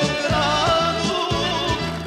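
Balkan folk song: a male singer's ornamented, wavering vocal line over a folk band of accordions, violins and clarinet with a steady bass beat.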